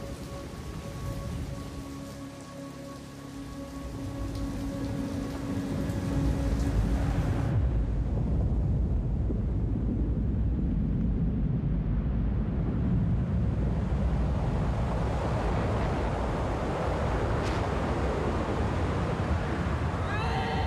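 Heavy rain hissing steadily, joined from about six seconds by a deep rumbling roar that builds and then holds loud: the sound of a snow avalanche pouring down a mountain face.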